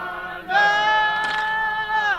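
Unaccompanied singing in an old field recording. A voice slides in and then holds one long, steady note from about half a second in.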